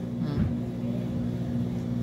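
A steady low hum, with a faint short voice sound about half a second in.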